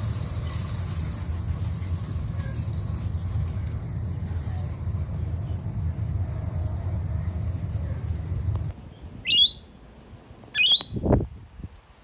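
A steady rushing noise, low rumble with hiss, stops suddenly; then come two short, high, falling bird calls, with a lower falling sound just after the second.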